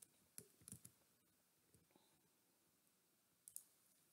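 Near silence with a few faint computer mouse and keyboard clicks: several in the first second and two more near the end.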